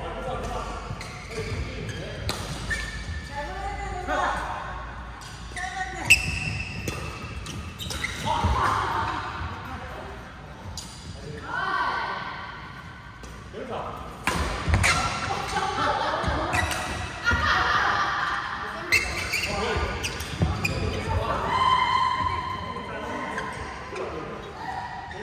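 Voices talking, with sharp knocks of badminton rackets hitting shuttlecocks now and then, echoing in a large sports hall.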